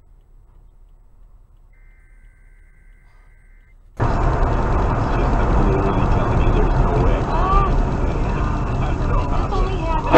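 Faint dashcam road noise with a steady electronic beep lasting about two seconds. About four seconds in, the sound cuts suddenly to loud in-cabin noise of a car being driven, with a person's voice heard briefly now and then.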